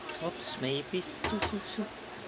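Voices talking, with two sharp clicks close together about a second and a half in, from the plastic main-board bracket of a Canon inkjet printer being handled and lifted out.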